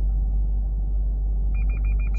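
Steady low rumble, with a quick run of high, evenly spaced beeps starting about three-quarters of the way through.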